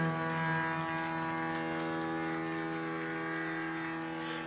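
Steady tanpura drone of a Hindustani classical performance, holding its tonic chord. The singer's last held note fades out about a second in.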